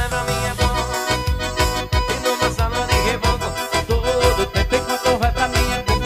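Live pisadinha-style forró music: an electronic keyboard plays sustained, organ-like melody lines over a steady beat with a heavy kick drum, an instrumental passage without singing.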